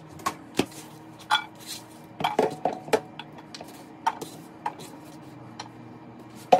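Kitchen clatter of a frying pan and a chef's knife against a plastic cutting board and counter as chopped onion goes into the pan: a string of separate knocks and clinks, busiest about two to three seconds in.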